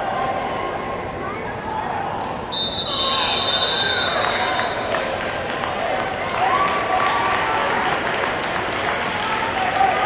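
Spectators shouting and cheering at a youth football game. About two and a half seconds in, a referee's whistle gives one long, steady blast of about two and a half seconds, the signal that stops the play.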